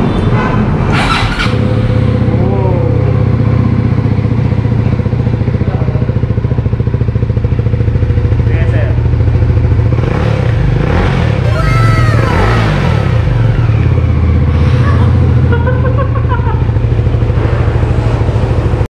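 A Voge motorcycle engine idling steadily at a constant speed.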